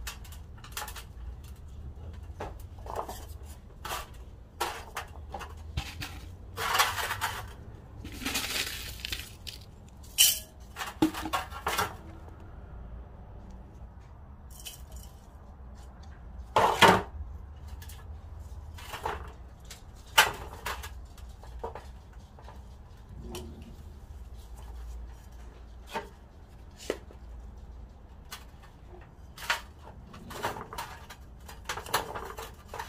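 Potting work: scattered knocks, clinks and rustling as gloved hands handle a geranium root ball and potting soil, with pots knocking against a galvanised metal tub and terracotta, the sharpest knock about halfway through. Soil is poured from a plastic pot into a terracotta pot.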